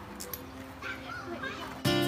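Faint voices of children in the background, then music comes in abruptly near the end.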